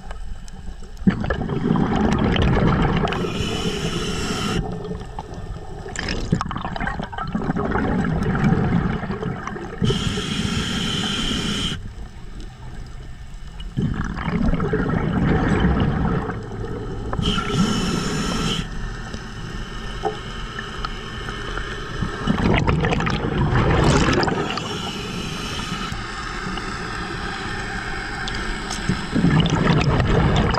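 A diver breathing underwater through a regulator. A hissing inhale alternates with a bubbling, rumbling exhale, the cycle repeating about every seven seconds.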